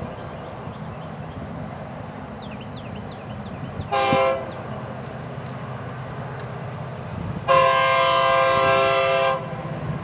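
Approaching Florida East Coast Railway diesel locomotive sounding its multi-chime air horn: a short blast about four seconds in, then a long blast about two seconds later, the close of a grade-crossing signal. A steady low rumble from the approaching train runs underneath.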